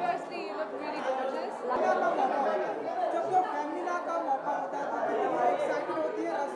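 Several people talking at once, overlapping chatter with no single voice standing out.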